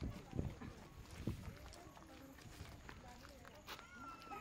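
Footsteps on asphalt, with two low thuds in the first second and a half, over faint chatter of people nearby.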